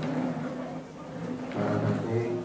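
Speech only: a man talking into a handheld microphone, with a short pause near the middle.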